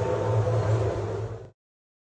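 Steady exhibition-hall background noise with a low drone, cutting off suddenly about a second and a half in.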